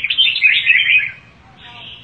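Red-whiskered bulbul in a cage singing a quick run of bright chirping notes that stops about a second in.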